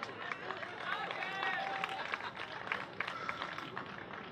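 Small outdoor crowd reacting: scattered hand claps and voices calling out.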